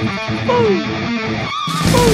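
Rock backing music with an electric guitar playing sliding, downward-bending notes, and a loud crash with a deep low end near the end.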